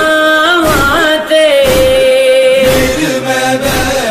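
A noha (Shia lament) sung by a solo male reciter, drawn out without clear words. The voice glides between notes and holds one long steady note in the middle.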